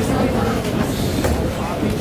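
Indistinct chatter and movement of a roomful of students in a large hall: many overlapping voices with no clear words, over a steady rumble with a few knocks.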